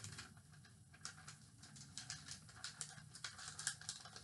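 A sheet of paper handled and folded by hand, faint irregular rustling and small crackles as it is bent and creased.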